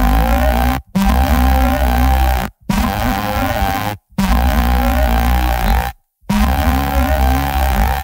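Bass sound resynthesised by the Fusion spectral plugin with its bass auto-tune pushed up, so that only the fundamental note is pitch-corrected. It plays as five long notes separated by short silences, a deep sub under a harsh, buzzy top.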